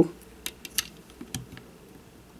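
A few light plastic clicks and taps as a minifigure is handled and pressed into the cockpit of a plastic brick model, spaced unevenly over the first second and a half.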